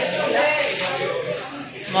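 Indistinct voices of people talking in a tiled market hall, with no other distinct sound standing out.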